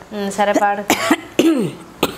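Women's voices with a short cough about a second in.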